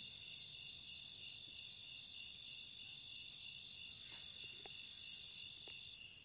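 Faint, steady high-pitched chirring of crickets, unbroken through the pause, with a few tiny clicks in the second half.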